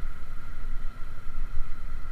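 Small motorcycle being ridden over cobblestones: a steady engine and road rumble mixed with wind buffeting on the microphone. It is running on a freshly replaced chain and sprocket kit, which the rider finds good now.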